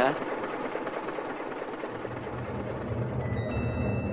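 A low droning sound bed bridging two scenes of an audio drama: a soft hiss that gives way, about two seconds in, to a low drone growing slightly louder, with a few faint thin high tones near the end.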